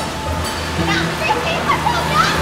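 A steady rushing noise with faint voices and quiet background music under it.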